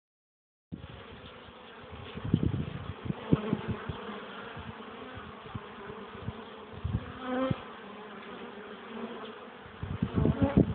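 Honeybees buzzing in a steady, dense hum, starting just under a second in. Several low thumps come between two and four seconds in, and a single louder, pitched buzz passes close around seven seconds in.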